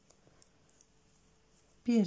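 Faint, sparse clicks of 3.5 mm knitting needles as stitches are worked, a few light ticks within the first second. A voice begins near the end.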